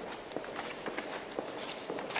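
Footsteps of a person walking at a steady pace across a polished stone floor, each footfall a short sharp click.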